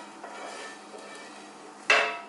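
Fried tofu being lifted out of a nonstick frying pan with a spatula and set on a plate: quiet handling, then one sharp kitchenware clink with a short ring near the end.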